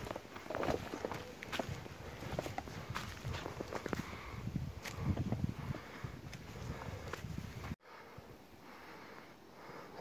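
Footsteps of a hiker walking on a dry leaf-litter forest trail, an irregular run of steps for about eight seconds. They stop at a sudden cut and a fainter steady hush follows.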